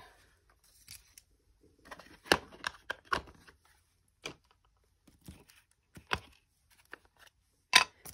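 A thin sheet of mylar being handled and laid flat, crinkling and rustling, among scattered light clicks and taps of craft supplies on a cutting mat. The loudest, a sharp plastic click near the end, comes as a plastic ink pad is picked up and opened.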